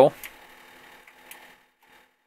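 The last of a man's spoken word, then faint microphone hiss with two faint clicks, cutting to silence near the end.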